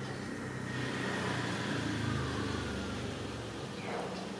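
Low rumble of a motor vehicle going past, swelling around the middle and fading with a faint falling whine.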